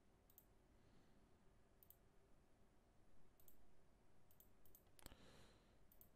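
Near silence with a handful of faint, sharp computer mouse clicks scattered through, as the player acts on his online poker tables.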